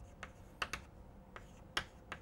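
Chalk tapping and scratching on a chalkboard as a word is written: a handful of faint, sharp clicks at uneven intervals.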